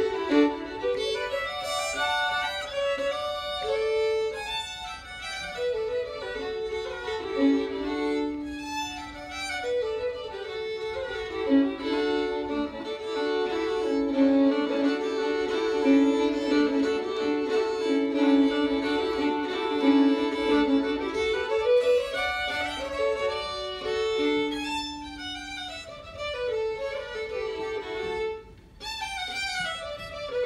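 Two fiddles playing a traditional tune together, with quick runs up and down and a stretch of long held notes in the middle.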